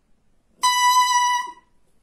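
A cor anglais double reed blown on its own, off the instrument: its two cane blades vibrating in one steady, reedy tone held for about a second, starting about half a second in.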